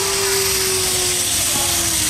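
Steady rushing noise of wind on a phone's microphone, with a faint held note underneath that fades out near the end.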